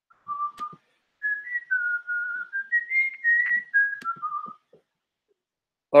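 A man whistling a short tune idly: a single clear tone stepping up and down through about a dozen notes over some four seconds, then stopping.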